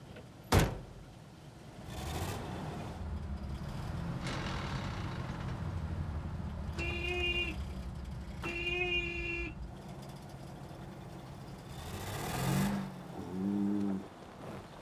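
A vehicle door slams shut once, sharply, then an old truck's engine runs. Its horn sounds twice, each a held honk of about a second, and near the end a cow lows twice.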